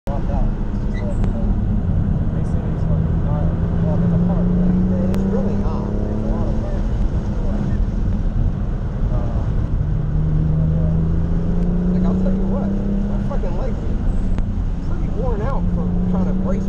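In-cabin sound of a BMW F80 M3 Competition's twin-turbo inline-six pulling hard on track, over road and tyre rumble. The engine note climbs and falls back twice.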